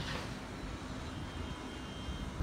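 Steady low outdoor rumble of background noise, with a faint steady hum running under it.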